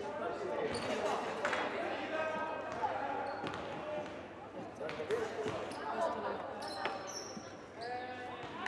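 A basketball bouncing on a hardwood court a few times as a free throw is set up, with players' and spectators' voices around it.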